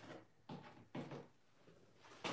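Three faint, short knocks and scrapes of a paintbrush working in a small paint container in the first second, then near silence.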